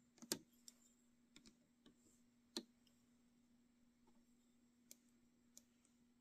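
A handful of faint, irregular clicks of a metal loom hook against the clear plastic pins of a Rainbow Loom and its rubber bands as the bands are hooked and lifted, the loudest just after the start and about two and a half seconds in, over a faint steady hum.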